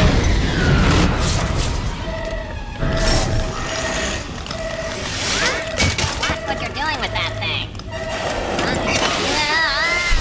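Cartoon sound effects: a loud explosion right at the start, then an alarm beeping about twice a second over background music and the noise of fire and spraying hoses.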